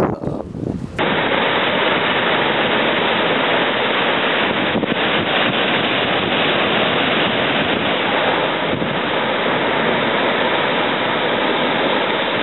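A steady, even rush of ocean surf where lava meets the sea, starting suddenly about a second in after a short stretch of wind on the microphone.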